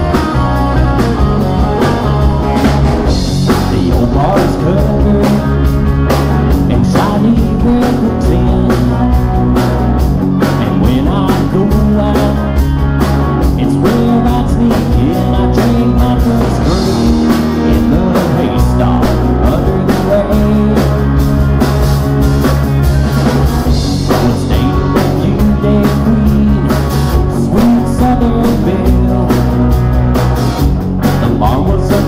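A live rock band playing a country love song with southern rock roots: two electric guitars, a bass guitar and a drum kit, with a lead vocal over part of it.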